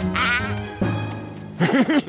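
A squeaky, nasal cartoon creature's wordless chatter over background music, followed near the end by a man's short run of chuckles.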